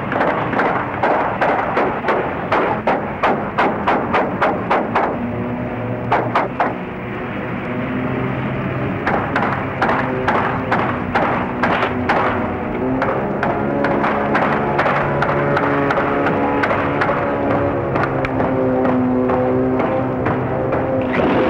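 A rapid series of sharp knocks or thuds, about two a second, thinning out after about thirteen seconds. Sustained low notes join in about six seconds in and move between a few pitches.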